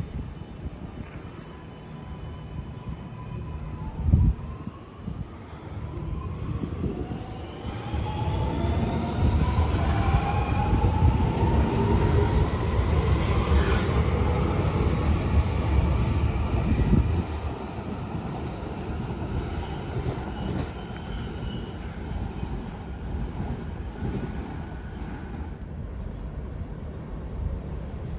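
Alstom Metropolis electric metro train pulling away from the platform: a thump about four seconds in, then the traction motors' whine rising in several pitches as it accelerates over a heavy wheel-and-track rumble. The rumble is loudest in the middle and eases as the train leaves.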